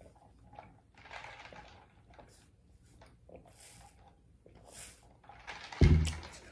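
Faint sips through a straw from a plastic tumbler, then near the end a single low thump as the tumbler is set down on the table.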